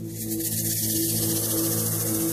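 Soft opening of a live band's song: held low chords swell slowly, and a bright hissing shimmer comes in at the very start.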